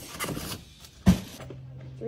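Cardboard box and plastic wrapping rustling as a boxed tool is unpacked, then a single sharp thump about a second in. A steady low hum follows.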